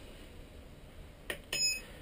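Turnigy 9X radio transmitter giving a short high electronic key beep about one and a half seconds in, just after a faint button click, as its menu is exited. The rest is quiet room tone.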